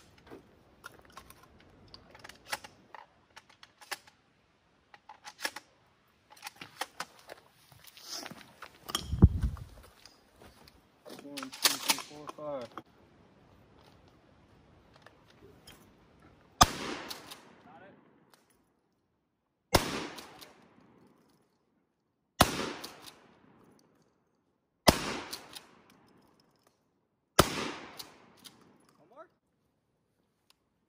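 Five shotgun shots at thrown clay targets, spaced about two and a half to three seconds apart, each followed by a short echoing tail. Before them come scattered clicks and knocks and a low thump about nine seconds in.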